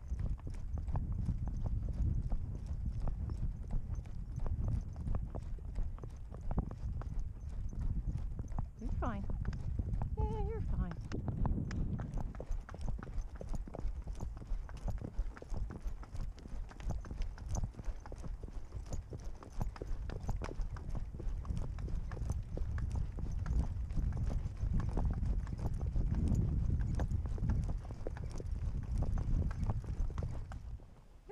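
Horse's hooves striking a sandy dirt trail in a steady, continuous run of hoofbeats, over a heavy low rumble.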